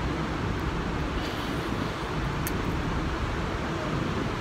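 Steady low rumbling background noise with no speech, and a brief faint click about two and a half seconds in.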